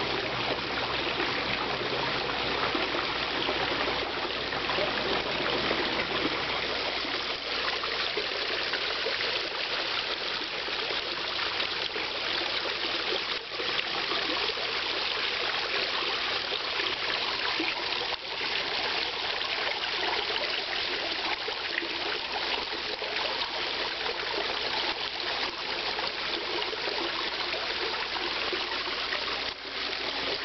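Water running steadily into a backyard koi pond, with no change over the whole stretch.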